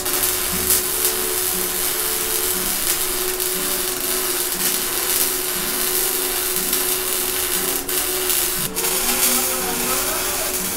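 MIG (wire-feed) welding arc burning steadily with an even sizzle much like bacon frying, the sound of a machine with its settings correctly adjusted. The arc strikes suddenly at the start and breaks off for a moment twice near the end.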